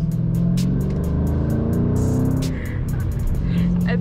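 Car engine and road drone heard from inside the cabin, its pitch rising over the first two seconds or so as the car accelerates, with background music playing.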